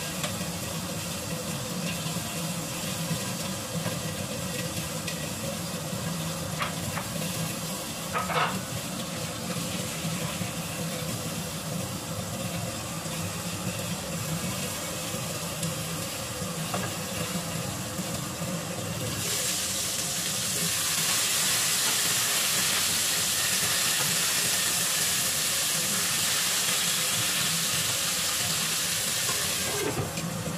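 Flour-dredged cod steaks frying in a lidded pan: a steady sizzling hiss that turns louder and brighter about two-thirds of the way in, with a single knock about eight seconds in.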